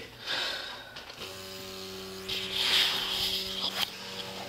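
Evidential breath-alcohol test machine running with a steady electrical hum that starts about a second in, and a hiss over it for about a second and a half in the middle.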